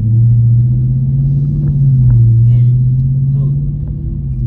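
Car engine and road drone heard from inside the cabin while driving, a loud steady low hum that rises a little in pitch and loudness about halfway through, then eases off.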